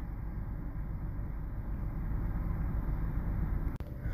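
Steady low rumbling background noise, with a single sharp click near the end.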